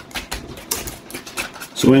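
A whisk beating gelatin and water in a pot, clicking quickly and irregularly against the pot's side. The mixture is frothing up.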